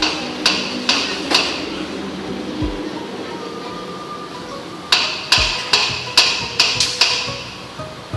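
Steel hand tools clinking and knocking against metal, a series of sharp strikes about two a second in two runs: one at the start and a longer one from about five to seven seconds in. Background music runs under them.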